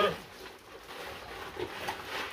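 Pigs grunting faintly a few times, with short quiet sounds against a low background.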